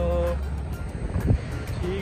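SUVs of a car convoy driving past close by, their engines and tyres giving a steady low rumble, with music playing over them. There is a short steady horn-like tone at the start and a brief sharp thump just past halfway, the loudest moment.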